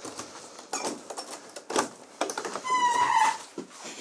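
A key clicking and turning in the lock of a front entrance door, a few sharp clicks as it is unlocked, then a short high squeak about three seconds in as the door swings open.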